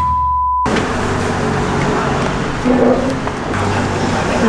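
A steady single-pitch test-tone beep of the kind played over TV colour bars, which cuts off sharply well under a second in. After it comes steady road traffic noise with a low hum.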